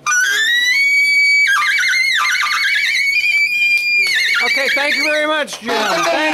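Saxophone played high in its squealing altissimo range: a tone that slides up and holds, breaks into a fast warble about a second and a half in, steadies again, then wavers and falls away near the end.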